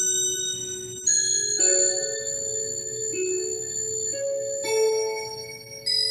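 Instrumental keyboard music: held chords with bright, bell-like upper tones, each new chord coming in sharply every second or few seconds, closing out a hymn after its last sung line.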